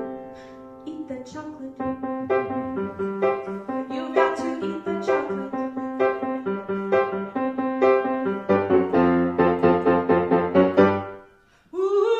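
Grand piano playing an instrumental passage of a pop song, chords and melody in a bouncy rhythm that grows fuller about eight seconds in. It stops briefly just before the end, where a woman's singing comes back in.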